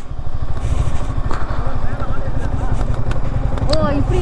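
Yamaha R15 V4's 155 cc single-cylinder engine running at low revs as the motorcycle rolls slowly, a steady low throb.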